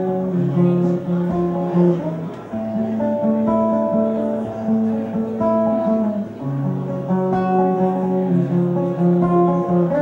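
Acoustic guitar played fingerstyle in a slow instrumental passage: ringing, held notes over a repeating bass pattern.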